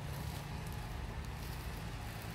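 Steady background noise inside a shop, mostly a low rumble, with no distinct event.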